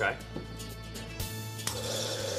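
Bar soda gun spraying soda water into a glass of ice: a hiss that starts suddenly just over a second in and keeps going, over background music.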